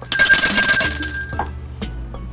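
A bright ringing chime, several high tones sounding together, starting suddenly and fading away over about a second and a half.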